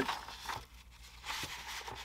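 A sheet of printed paper rustling as it is handled and slid across the bench, with a few light ticks, a little louder near the end.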